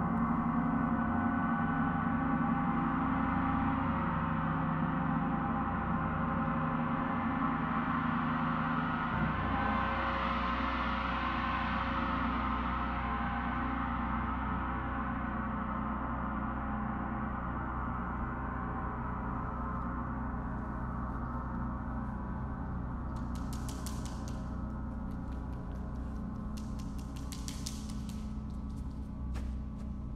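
Large suspended gong played with a soft-headed mallet, a sustained wash of many overlapping tones that brightens about ten seconds in and then slowly fades. Near the end, two short bursts of high rattling sit over the ringing.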